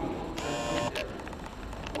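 Video camera's zoom motor whirring for about half a second as the lens zooms in, picked up by the camera's own microphone, followed by a short click.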